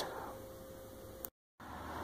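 Faint background hiss with a faint steady tone. A little over a second in it drops to total silence for a moment at an edit cut, then the hiss returns and grows.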